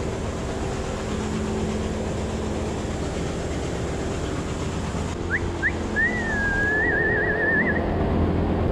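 Steady hum of milking-parlor machinery and a cooling fan running. Over the last few seconds a high whistle comes in: two short rising chirps, then a longer wavering tone.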